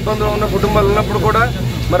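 A man speaking Telugu to the camera, his voice continuing without a pause, over a steady low background rumble.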